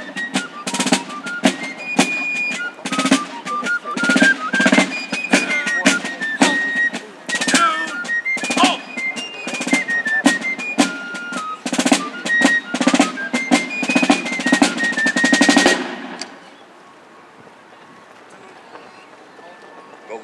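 Fife and drum corps playing a march: a shrill fife melody over snare drum strokes. The music ends about sixteen seconds in on a snare drum roll.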